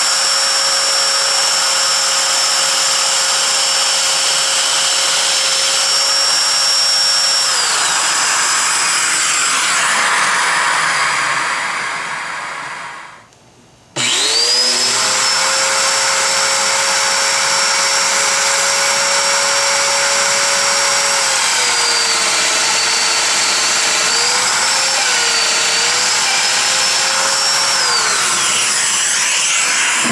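Festool Domino joiner running with its dust extractor, a steady high motor whine over the rush of suction. Partway through it winds down and falls quiet briefly, then starts again abruptly. Later the pitch sags and wavers several times as the cutter plunges into the wood to cut the mortises.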